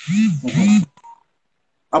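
A man's voice making a loud two-part hummed "uh-huh", each part rising and falling in pitch, then a short faint tone about a second in, with speech starting again near the end.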